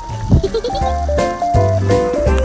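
Background music: a melody moving in steps between held notes over a steady bass, with a few sharp percussive strokes. Bleating animal calls are mixed in.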